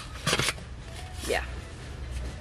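Plastic chick waterer being handled: a short dry scrape of the red plastic base twisting against the plastic jar, near the start.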